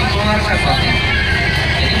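Steady low rumble of a coach bus running, heard inside its passenger cabin, under a man's voice.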